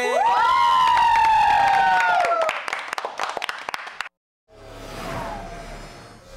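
The end of a hip-hop dance performance: several long held tones swoop up and then slowly fall, over cheering and clapping that fade out. About four seconds in the sound cuts to a brief silence, then a quieter station logo sting begins with a low hum.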